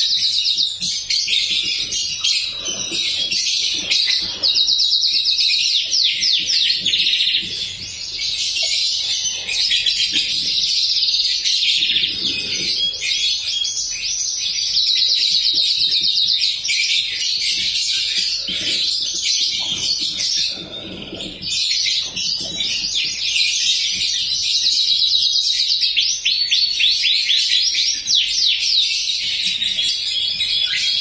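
A domestic canary singing a long, continuous song of rolling phrases and fast trills of rapidly repeated notes, with short breaks about eight and twenty-one seconds in.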